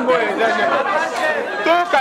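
Several people talking over one another, one voice repeating "oui, oui".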